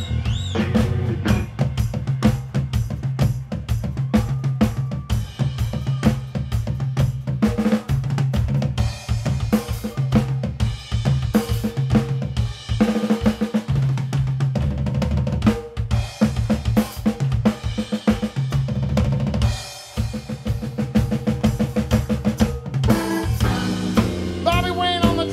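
Live drum solo on a full drum kit, fast snare, kick and cymbal strikes with rolls, over a repeating bass guitar riff. Near the end the electric guitar comes back in.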